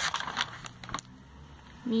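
A glossy paper catalogue page being turned by hand: a short rustle and flap of paper during the first second, ending in a light tap about a second in.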